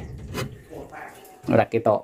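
A single light click about half a second in, with faint rustling and rubbing as the wooden wardrobe is handled, then a short spoken word near the end.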